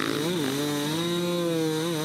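Dirt bike engine under heavy throttle, pulling up a sandy bank: its pitch rises about a third of a second in, holds high and steady, then dips and climbs again near the end.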